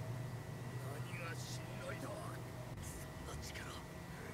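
Faint, quiet speech in a few short phrases over a steady low hum.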